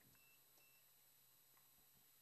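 Near silence: a faint steady low hum, with two very short, faint high beeps within the first second.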